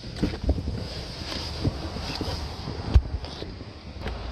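Handling noise, rustling and knocks as someone climbs out of a car with a phone camera, with one sharp thump about three seconds in. Wind on the microphone.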